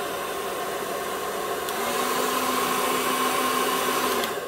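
Remington hair dryer running: a steady rush of air over its fan motor's hum. A faint click comes a little before halfway, after which it runs slightly louder.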